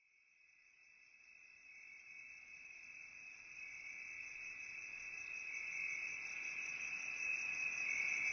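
Cricket-like insect chirping in a steady, fast-pulsing trill that fades in from silence and grows louder throughout.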